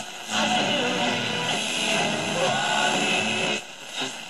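Music from an AM station playing through the small speaker of a Tivoli Audio Model One table radio as it is tuned across the band. It comes in a moment after the start and drops out shortly before the end as the dial moves past the station.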